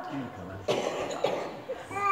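A person coughing, starting suddenly about two-thirds of a second in, among low voices.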